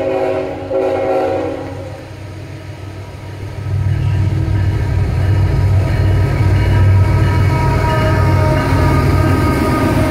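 A diesel locomotive's air horn sounds a chord of several tones, ending about two seconds in. From about four seconds in, the deep rumble of the CSX freight locomotive's engine builds and holds loud as it approaches and draws alongside, with a faint steady whine above it.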